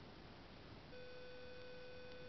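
Faint hiss, then about a second in a steady, even-pitched electronic tone comes in and holds.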